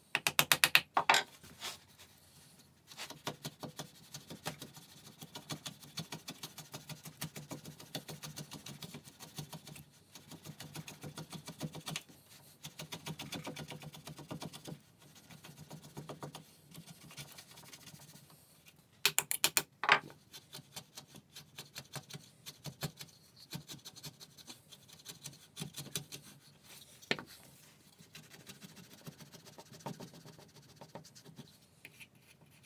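A few sharp hammer taps on a wooden blade-locking wedge, then a shop-made router plane's half-inch chisel blade paring across wood in rapid short scraping strokes, in bursts with brief pauses. A second quick run of sharp taps comes about two-thirds of the way through.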